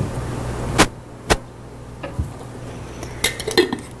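Glass jars and their lids being handled on a table: two sharp knocks about a second in, a lighter tap at about two seconds, and a few small clicks near the end.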